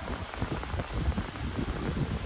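Wind buffeting the microphone, an uneven low rumble with a faint hiss above it.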